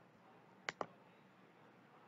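Two computer mouse clicks in quick succession, a little under a second in, over faint steady hiss.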